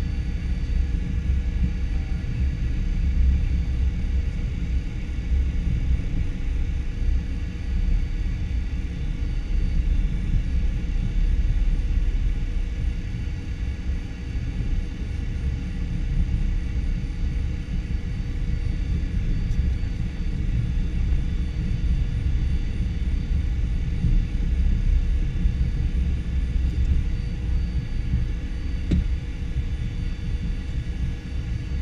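Cockpit noise of a Cessna Citation V taxiing: a steady low rumble with thin, steady whine tones from its Pratt & Whitney JT15D turbofan engines running.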